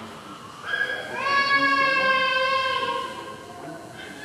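A baby or young child crying: one long drawn-out wail that slides up in pitch about a second in, holds for about two seconds, then fades.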